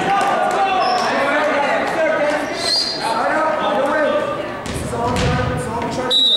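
Players and spectators talking and calling out together in a gymnasium, with a volleyball bouncing on the hardwood floor and a few short high squeaks like sneakers on the court. There are low thuds about five seconds in.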